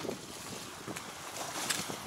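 Footsteps going quickly down a short flight of outdoor steps, a few separate footfalls, over a steady rush of wind on the microphone.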